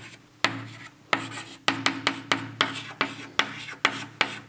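Chalk writing on a blackboard: a quick, uneven run of sharp taps and short scratches, about two or three strokes a second.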